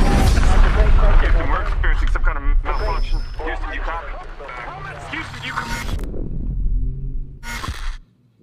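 Film trailer soundtrack: a loud, deep rumbling score and sound effects with voices layered in, easing off after about four seconds, then a short loud hit just before the end.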